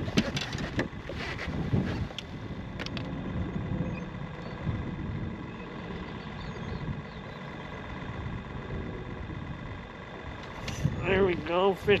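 Steady low drone of a small boat motor running, with a few light clicks in the first second. Near the end a man's voice breaks in as a fish is hooked.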